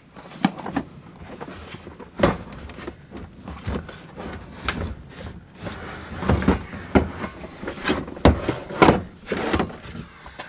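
Hard plastic storage box of pegs and hardware being lifted and wedged into a caravan front locker: a string of irregular knocks and scrapes of plastic against the locker walls as it is worked into a tight space.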